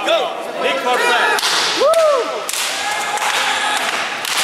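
Cloth jiu-jitsu belts lashing a man's bare back in a belt-whipping gauntlet after his promotion: a quick run of sharp cracks that grows denser about halfway through. Men yell and whoop over the cracks.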